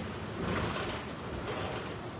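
Cabin noise inside a New Flyer DE60LFR diesel-electric hybrid articulated bus underway: a steady low drivetrain and road rumble, with a brief louder rush of noise about half a second in.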